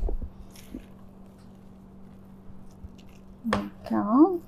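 Plastic spatula scraping and stirring thick, freshly blended hummus in a stainless-steel food processor bowl: faint, soft squishing and scraping, with a short louder sound near the end.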